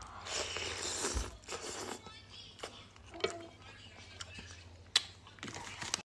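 A person slurping a spoonful of borscht off a metal spoon for about two seconds, then chewing, with a few sharp clicks and one loud click about five seconds in.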